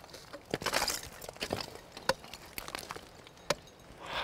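Ice tool picks striking a frozen waterfall in repeated swings: several sharp, separate hits, the loudest near the end. The climber keeps swinging into poor ice until the pick sets in a solid placement.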